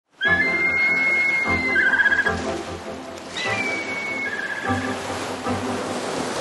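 Background music with a high whistled eagle call laid over it, heard twice. Each call is a long held whistle that breaks into a fast chittering trill, the second one starting with a short downward slide.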